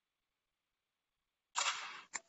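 Dead silence, then about a second and a half in a short, hissy burst of noise that fades away, picked up by an open microphone on the call.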